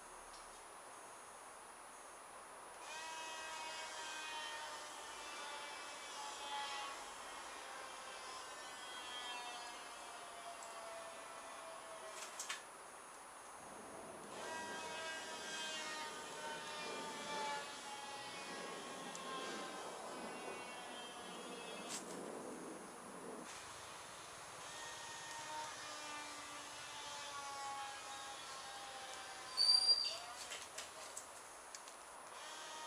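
Small coreless electric motor spinning the glider's propeller: a high whine that sinks slowly in pitch over each run of several seconds as its supercapacitor runs down. It happens three times, with a short knock near the end of the first two runs and a loud knock right at the end.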